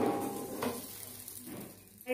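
Dosa batter sizzling on a hot pan as more batter is ladled on; the sizzle starts sharply and dies down over the two seconds.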